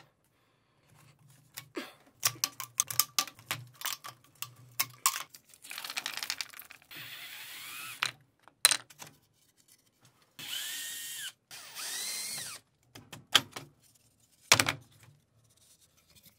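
Cordless drill-driver run in three short bursts, its whine rising and falling in pitch as screws are backed out to dismantle the part, with clicks and knocks of wooden and plastic parts being handled and lifted off before and after.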